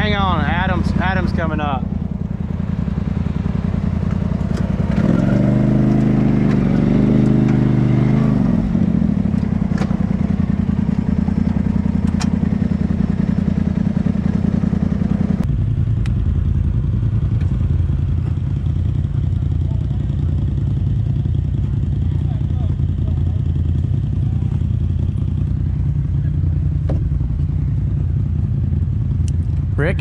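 Polaris RZR side-by-side engine running at low speed while crawling a rocky trail, with one rev that rises and falls about five seconds in. About halfway through the sound changes abruptly to a steady low drone.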